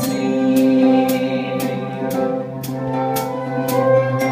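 Live band playing an instrumental passage: held cello and ukulele chords over a steady percussion tick, about two ticks a second.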